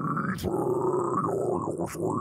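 A man performing a really deep low harsh metal vocal: one long, rough growl, with a few brief dips in pitch partway through.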